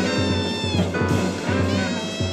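Live free-jazz ensemble playing: a wind instrument wails long, high held notes that bend in pitch over bass and drums. One note falls away a little under a second in and another starts just after.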